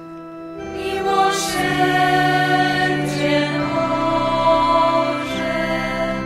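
Choir of nuns singing a slow hymn in long held notes, the voices swelling in after a soft moment at the start.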